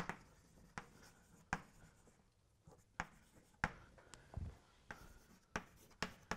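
Faint chalk writing on a chalkboard: a loose series of short taps and scratches as letters are chalked, with brief pauses between strokes.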